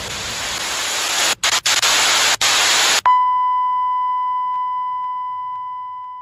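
Television static sound effect: loud hiss broken by a few brief dropouts, then about three seconds in it cuts abruptly to a steady test-tone beep like the one played with colour bars, fading slowly.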